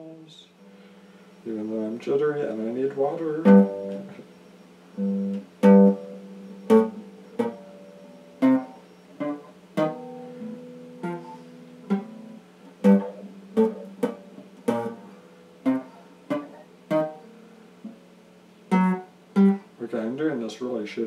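Electric guitar played slowly: single notes and chords picked one at a time with short gaps between them, each one ringing out.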